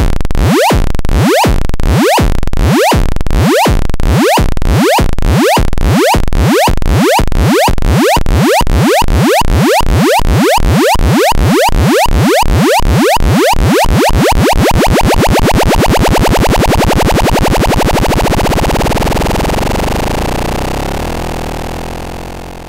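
Modular synthesizer sound retriggered by an ADSR envelope looping through a Schmitt-trigger inverter circuit: repeating electronic hits, a little under one a second at first, coming ever faster as the envelope's knobs are turned down. About two-thirds of the way in they blur into a continuous buzzing tone, which then fades away.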